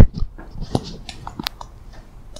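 Small wet mouth clicks and lip smacks from a person about to speak, with a sharp click about one and a half seconds in. A brief thump comes at the very start.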